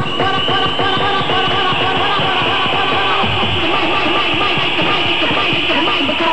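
Vinyl record being scratched by hand on a turntable: quick back-and-forth strokes, about three or four a second, each sweeping up and down in pitch.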